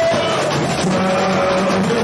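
Live samba-enredo played loud by a samba school: a dense drum section under a held, sung melody, without a break.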